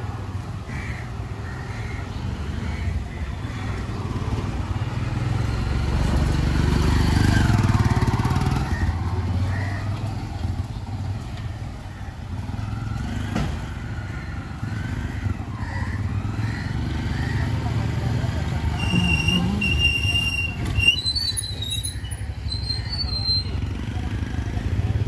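Village street ambience: a low engine rumble from passing traffic that swells and fades about six to eight seconds in, with people talking nearby. A few short high tones sound near the end.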